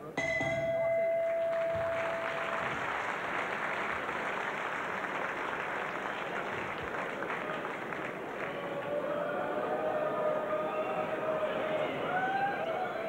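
Boxing ring bell struck once to end the round, its tone ringing for about two and a half seconds, with the crowd applauding and cheering through and after it.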